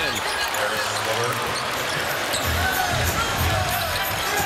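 A basketball being dribbled up the court on the hardwood floor, with steady arena crowd noise around it.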